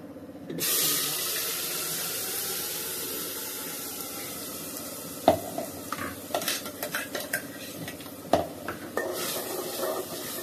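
Wet ground masala paste dropped into hot oil in an aluminium handi: a sudden loud sizzle about half a second in that slowly dies down as it fries. In the second half a metal spoon clinks and scrapes against the pot as the paste is stirred.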